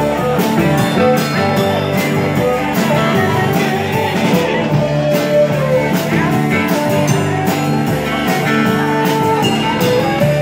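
Live folk-rock band playing an instrumental passage: strummed acoustic guitar with bowed fiddle, upright bass and drums, steady and loud.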